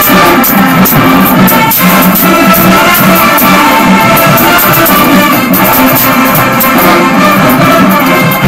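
Loud brass-heavy music with a steady percussive beat.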